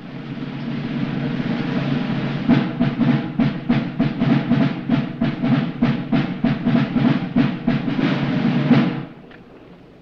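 Military drums at a flag ceremony: a drum roll that builds, then a steady beat of about four strokes a second that stops shortly before the end.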